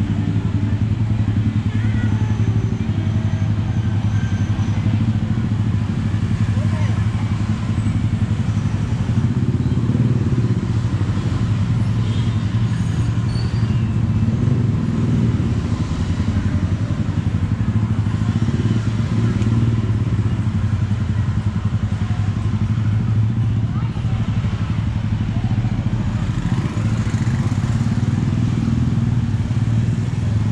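Busy street ambience: motorbike traffic running by, with a steady low hum underneath and people talking in the background.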